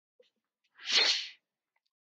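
A single short burst of breath from a man into his headset microphone, lasting about half a second, with no voice in it.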